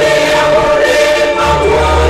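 Mixed church choir singing in sustained, held chords, with a low bass note coming in about one and a half seconds in.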